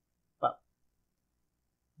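A man's voice saying one short word, "but", about half a second in, with near silence around it.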